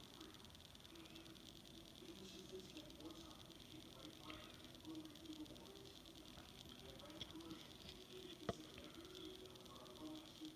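Near silence: faint room tone, with one soft click near the end as a trading card is handled.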